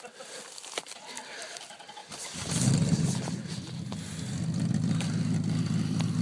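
A pickup truck's engine starts about two seconds in, revs briefly, then settles into a steady idle.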